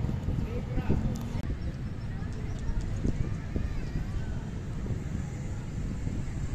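Open-air ambience of indistinct voices of people talking in the background over a steady low rumble.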